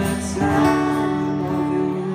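Two acoustic guitars strumming live. A new chord is struck about half a second in and held ringing.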